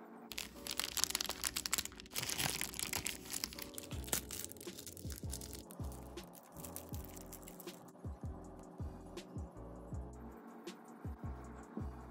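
Background lo-fi hip-hop instrumental with held keyboard chords and a soft beat, overlaid by dense crackling noise in the first few seconds.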